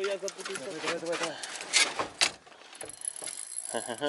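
A man's voice for about the first second and a half, then a few sharp clicks and light metallic rattling of fishing tackle being handled.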